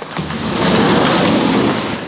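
A sliding glass patio door being pulled open: a loud, even rushing noise, low rumble and high hiss together, lasting nearly two seconds.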